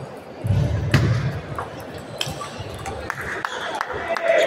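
Ping-pong balls clicking sharply on tables and paddles in a large echoing hall, quickening into a rapid run of clicks near the end, with a heavy low thud about half a second in.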